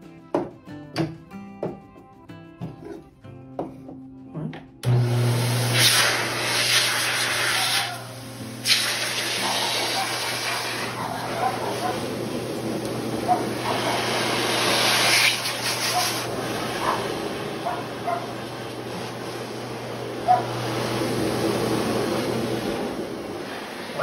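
Background music with notes for the first few seconds. Then a pet blower dryer's motor switches on suddenly, running with a steady low hum and rushing air, the air noise dipping briefly a few times. The hum drops out near the end.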